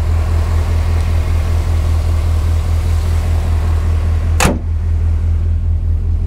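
GMC Sierra 1500 V8 with aftermarket shorty headers idling steadily and smoothly. A single sharp knock sounds about four and a half seconds in.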